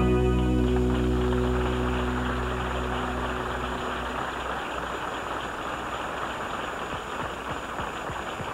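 A live band's final chord, with organ, held and then stopping about halfway through, under a studio audience's applause, which carries on after the chord ends.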